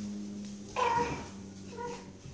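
A baby's short, high-pitched vocal squeal a little under a second in, then a shorter, fainter one near the end, over a steady low hum.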